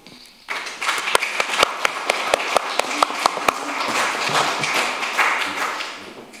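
Audience applauding, starting about half a second in, with some sharp single claps standing out, then dying away near the end.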